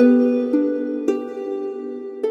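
Instrumental hymn music played on a plucked string instrument like a harp: gentle single notes, each struck sharply and then ringing away, about two a second.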